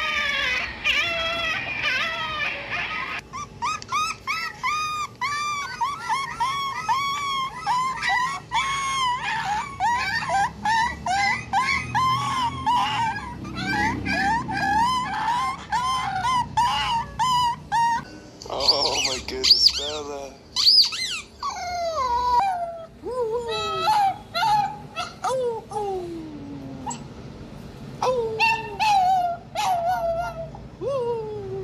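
Dog whimpering and yelping: short, high yelps repeated about two a second through most of it, then longer high whines and whines that slide down in pitch near the end.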